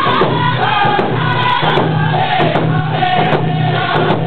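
Cree round dance song: a group of singers singing together in unison over hand drums, the melody stepping gradually downward.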